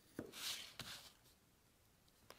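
Craft knife blade drawn through thin card along a pattern line: a faint click, a short scratchy cutting stroke, then another click, all within the first second.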